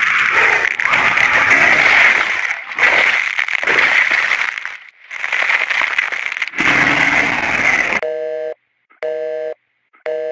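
Loud, harsh, distorted noise with a few brief dropouts, cutting off about eight seconds in. A telephone busy signal follows: a two-note tone beeping about once a second, the sign that the call has been disconnected.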